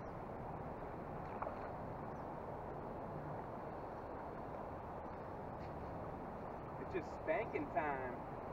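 Steady, even rushing of a shallow river's current, with faint, brief voices near the end.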